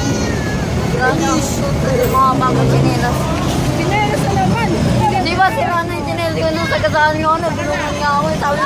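Several people talking over road traffic, with a vehicle engine running steadily close by.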